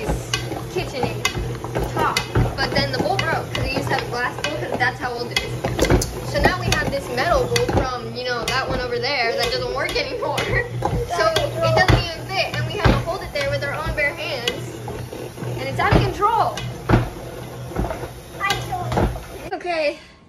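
Busy kitchen noise under background music: overlapping voices, frequent clicks and clatters of utensils and dishes, and a steady low hum.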